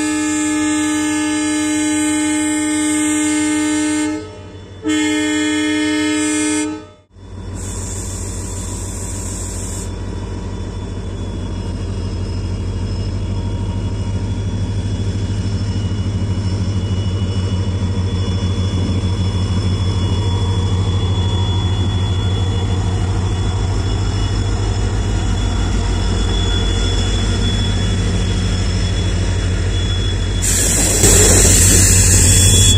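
WDP4D diesel locomotive sounding its horn in two blasts, a long one of about four seconds and then a shorter one of about two seconds. Then its EMD two-stroke diesel engine runs with a steady low drone that grows gradually louder as the train draws near.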